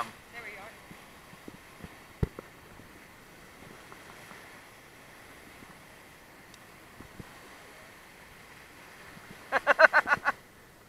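Faint steady rush of whitewater pouring over the rocks, with scattered small knocks and a sharper click about two seconds in. A brief voice comes near the end.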